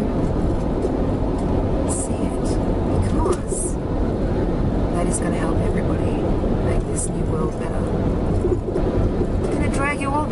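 Steady low rumble of a car's engine and tyres heard inside the cabin while driving.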